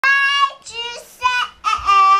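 A toddler girl singing a few short, high-pitched notes in a row, the last one held.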